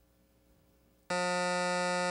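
Quiz-show time-up buzzer: one steady buzz that cuts in about halfway through, sounding when the time to answer runs out with no answer given.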